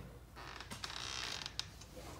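A door creaking as it is opened, a drawn-out scraping creak lasting about a second, with a few light clicks.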